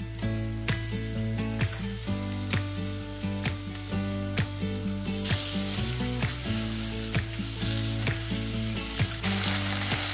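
Beef chunks sizzling as they fry in a pan with browned onions, ginger and garlic, stirred with a wooden spoon. The sizzle grows louder about halfway through. Background music with a steady beat plays under it.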